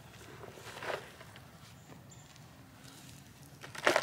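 Soft scuffs and rustles of gloved hands working soil around a blueberry bush as it is set into its planting hole, with a sharper scuff near the end.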